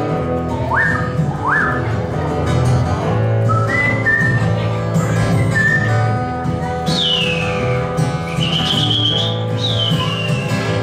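Acoustic guitar playing with high whistled notes over it that slide in pitch: two quick upward slides about a second in, held notes in the middle, and several downward swoops near the end.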